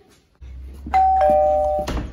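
Two-tone doorbell chime: a higher ding, then a lower dong about a quarter second later, both held and cutting off together, over a low rumble.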